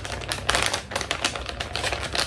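Plastic packaging of a makeup sponge set crinkling and crackling as it is handled, a quick run of small clicks and rustles.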